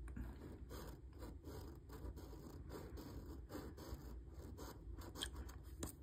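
Faint, quick repeated strokes of a coin scraping off the latex coating of a scratch-off lottery ticket.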